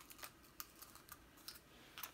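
Near silence with a few faint, scattered clicks of small plastic nail-foil bottles and packaging being handled.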